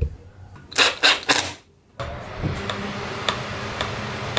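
Plastic scrapes and clicks as a small Victron GX Touch display is pressed and slid into its wall mounting bracket: three quick, loud bursts about a second in. From about two seconds on, a steady low hum with faint ticks about twice a second.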